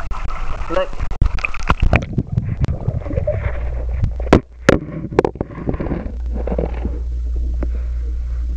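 A camera plunged into a swimming pool: sharp knocks and splashes as it goes under and is moved about, then from about six seconds in a steady, muffled low rumble as it records underwater.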